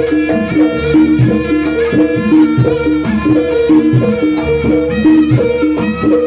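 Live Javanese jaranan dance music: a gamelan-style ensemble playing a fast, evenly repeating pattern of pitched notes over steady hand-drum strokes.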